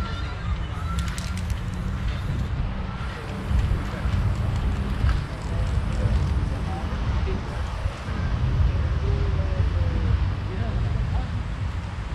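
Outdoor ambience: a steady low rumble with faint, distant voices, and a few sharp clicks about a second in.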